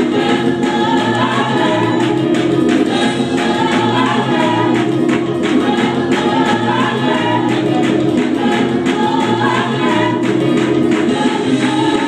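Gospel choir singing live with band accompaniment: a repeating bass figure, sustained chords and regular drum hits under the massed voices, loud and steady.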